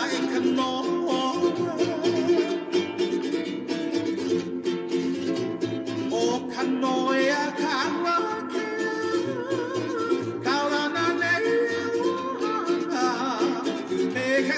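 Hawaiian hula song with strummed ukulele and a singing voice, at an even, steady strum.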